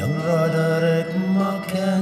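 Male folk singer holding one long sung note with vibrato over acoustic guitar accompaniment, in a Scottish folk ballad.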